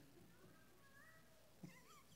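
Near silence: room tone, with a few faint, thin rising squeals in the background.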